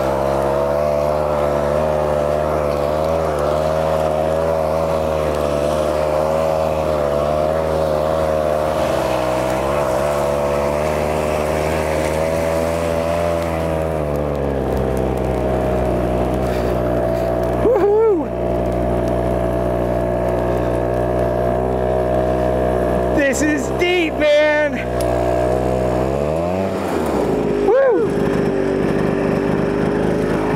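Two-stroke 134cc engine of a tracked ski-propulsion unit running steadily under load as it pushes a skier through deep, heavy snow. Its pitch sags about halfway through, and near the end it drops sharply and settles to a lower, steady note as the rider stops.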